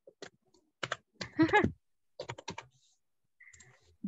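Computer keyboard typing in short scattered runs of clicks, heard over a video call. A brief voice sound, about one and a half seconds in, is the loudest thing.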